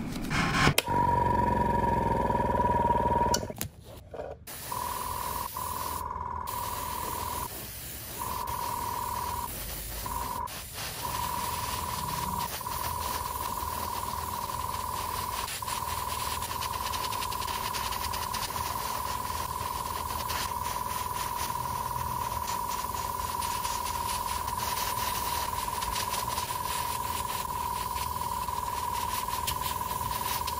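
Paint being sprayed onto plastic model kit parts: a steady hiss with a constant whine under it, broken by a few short gaps in the first third.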